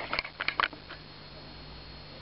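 A few quick soft clicks of the camera being handled as it zooms in, bunched in the first second, then a faint steady background hum.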